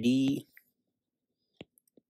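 The end of a spoken word, then quiet broken by a single short click of a stylus tapping a tablet screen about a second and a half in.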